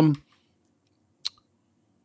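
A man's word trailing off, then a pause broken by a single short, sharp click about a second and a quarter in.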